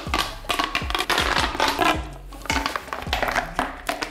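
Corrugated plastic pop-tube fidget toy crackling and clicking over and over as it is squeezed and crumpled in the hands, over background music.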